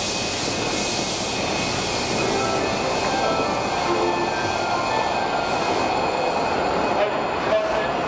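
Keisei 3700-series electric train with a Toyo GTO-VVVF inverter starting to pull away: steady rumble while it stands, then near the end the inverter tone sets in and begins to rise as the train moves off.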